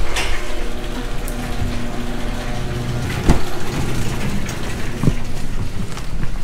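Steady mechanical drone of a garage door opener running, with a sharp click about three seconds in as a car door handle is pulled and another smaller click near the end.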